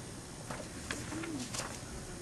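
Paper sheets rustling and tapping in short, irregular clicks as a stack of paper is handled, with a brief faint low hum just after the middle.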